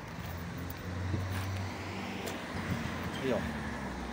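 Background road-traffic noise outdoors: a low, steady hum that swells slightly about a second in.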